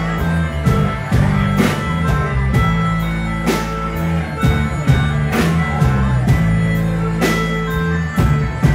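Rock band playing live through a PA, an instrumental passage with electric guitar, bass and drum kit keeping a steady beat, no vocals.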